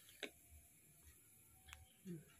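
Near silence with two faint ticks about a second and a half apart: a test-pen screwdriver tip touching an analog panel voltmeter and its zero-adjust screw.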